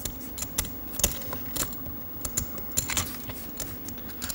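Clay poker chips clicking as they are handled and stacked at the table: a scatter of sharp, irregular clicks over a faint steady low hum.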